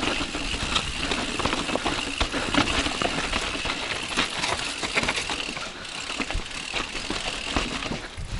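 Yeti SB140 full-suspension mountain bike rattling and clattering over a rocky trail, with tyres knocking on rock and many small rapid clicks from the bike's drivetrain and frame.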